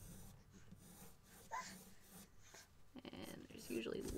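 Faint scratching of a pencil sketching on paper. A voice starts talking near the end.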